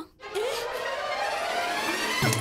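Dramatic background-score swell: a sustained synthesized chord that enters just after the start and rises slowly in pitch, a reaction sting under a shocked close-up.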